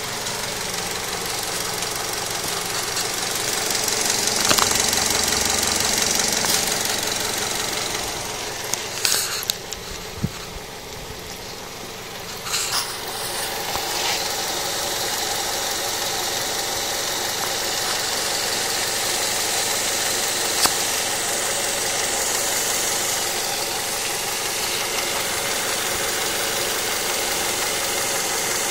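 Mazda 6 2.0-litre DOHC 16-valve four-cylinder engine idling at operating temperature, heard close up in the engine bay by the accessory belt pulleys. A few brief clicks stand out around the middle.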